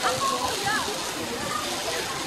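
Faint voices of people talking in the background over a steady hiss.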